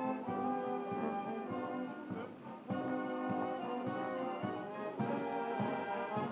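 Brass band playing a national anthem in slow, held chords.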